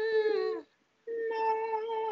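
A man singing a held note in high head voice on the syllable "nine", with a slight vibrato, as a vocal agility exercise. It cuts off suddenly about half a second in, and after a short silence a second note starts at the same pitch about a second in.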